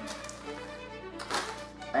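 A plastic bag of powdered sugar crinkling briefly as it is handled, about a second and a half in, over faint background music.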